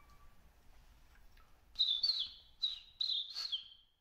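A small bird chirping: about five short, high calls that each slur downward, in the second half. A flute note dies away at the very start.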